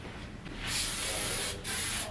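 Aerosol disinfectant spray hissing in two bursts, a longer one of about a second followed by a shorter one near the end.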